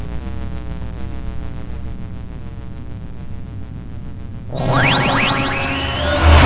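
Intro sound design: a sustained synthetic drone that slowly falls in pitch, then, about four and a half seconds in, a loud rising whoosh sweep with a steady high tone building toward the end.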